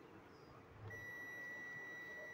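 Multimeter continuity buzzer giving one steady high beep, starting about a second in, as the probes bridge terminals 1 and 2 of the timer relay: the contacts are continuous, showing they are normally closed.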